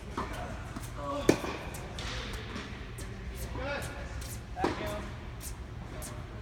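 Tennis ball struck by racket in a large indoor court hall: one sharp, loud hit about a second in and another later on, each echoing, with voices in the background.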